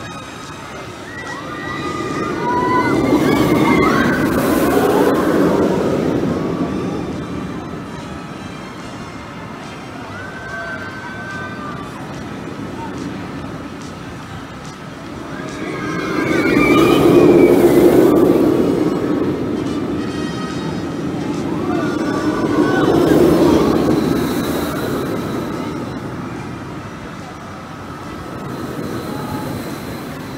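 Tempesto, a Premier Rides Sky Rocket II launched steel coaster, rushes along its track overhead with riders screaming. The sound swells and fades three times as the train passes back and forth, loudest about 17 seconds in.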